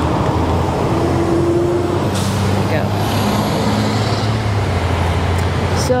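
Idling traffic at a red light: a steady low engine hum from the scooter and the cars around it, with a short hiss about two seconds in.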